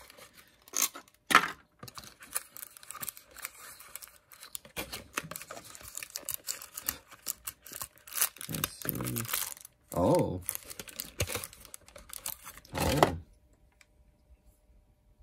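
Thin clear plastic bag crinkling and rustling in the hands as it is worked open to free a small action-figure head, with brief voice sounds a few times in between.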